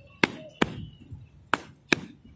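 Four sharp clicks in two quick pairs, about a second apart.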